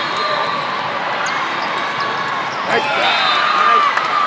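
Volleyball hall din: balls thudding and bouncing on the courts over a mix of many players' and spectators' voices. About three seconds in, the voices get louder with a burst of shouting as the rally ends.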